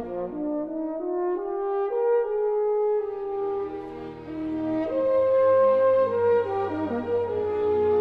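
French horn playing a melodic solo line over orchestral accompaniment, stepping upward to a held high note about five seconds in.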